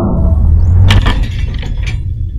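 CRT television picture tube imploding: a low rumble, then sharp cracks and clinks of breaking glass about a second in and again near the end.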